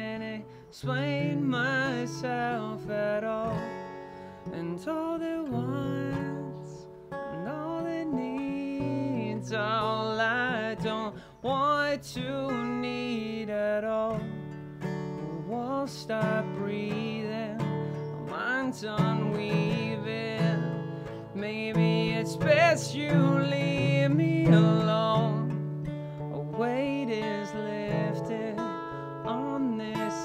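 Acoustic guitar strummed as accompaniment, with a male voice singing a melody over it.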